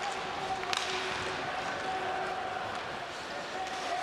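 Ice hockey game sound in an arena: steady crowd noise with skates on the ice, and a sharp stick-on-puck clack about three quarters of a second in.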